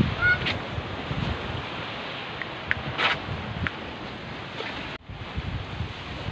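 Wind rushing over the camera microphone outdoors, with low rumbling gusts and a few short high-pitched sounds around the middle. The sound cuts off suddenly about five seconds in and starts again.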